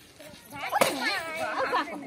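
A short lull, then a single sharp crack a little under a second in, followed by several people talking at once in overlapping voices.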